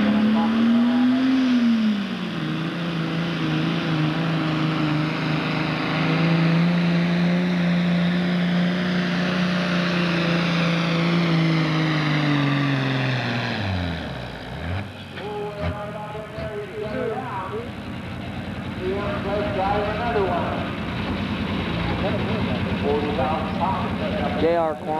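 Turbocharged diesel engine of a Pro Stock pulling tractor under full load, pulling the sled. It holds high revs for about twelve seconds, then winds down sharply as the pull ends, and after that it runs more quietly.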